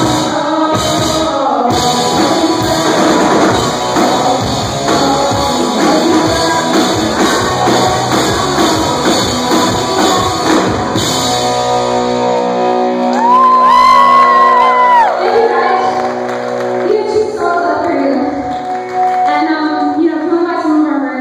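Live rock band playing loudly: electric guitar, drums and bass under a woman's lead singing. About twelve seconds in the drums and bass drop out, leaving ringing guitar chords and a long held note that rises and falls as the song winds down.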